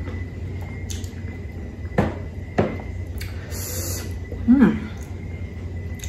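Close-miked eating of crisp unripe Indian mango: a few sharp crunches and mouth noises, then a short hummed 'mm' near the end, over a steady low hum.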